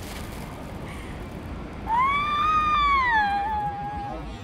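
A woman's long, high-pitched wailing cry. It starts about two seconds in, rises and then slowly falls in pitch, and sits over a steady background hiss.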